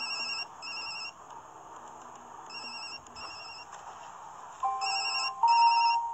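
A mobile phone ringing: three rings about two seconds apart, each a pair of short, high electronic beeps. Near the end, steady held musical tones come in, louder than the ring.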